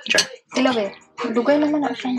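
People talking in short phrases with brief pauses between them.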